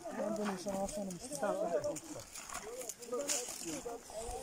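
People's voices talking indistinctly throughout, with brief crackles of brush and twigs.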